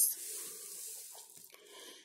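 Paper rustling and sliding as the workbook sheet is moved to the next question, starting sharply and fading out over about a second and a half.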